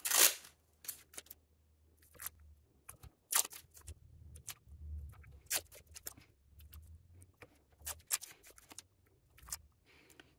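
Masking tape being pulled off its roll and torn into short strips, a run of brief rasping rips with pauses between, the loudest right at the start, as strips are laid onto a guitar's fingerboard between the frets.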